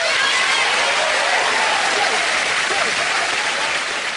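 Studio audience applauding, a steady clatter of clapping with some cheering voices mixed in.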